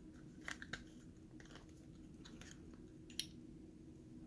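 Faint crackling and clicking as a clear diaphragm seal is pried off the aluminium body of a Honeywell VR9205 two-stage gas valve by hand, with two small clicks about half a second in and a sharper click about three seconds in.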